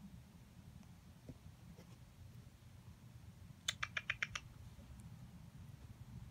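A quick run of about six sharp clicks a little past halfway, over a faint low rumble.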